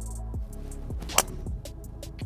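Background music with a steady drum beat, cut by a single sharp crack of a driver striking a golf ball about a second in, the loudest sound.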